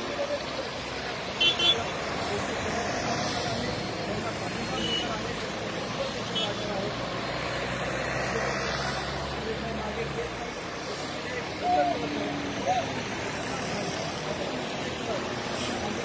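Road traffic from a convoy of cars and jeeps driving past, a steady wash of engines and tyres. A low engine drone fades out about ten seconds in. Short louder bursts come about a second and a half in and again near twelve seconds in.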